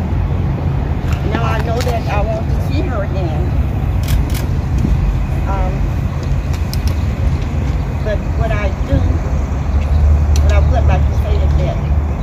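Steady low rumble of outdoor street noise, with faint voices talking and a few small clicks.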